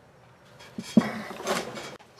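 A small cast model-steam-engine frame with a brass packing gland being set down on a towel-covered workbench: two light knocks about a second in, the second the loudest, then a short rustle of handling.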